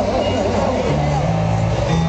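Live band music over a PA: an instrumental stretch between sung lines, with sustained bass notes that change about twice.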